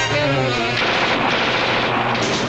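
Rock and roll band with drums and cymbals playing the song's finish. A held chord gives way, under a second in, to a dense wash of cymbals and drums.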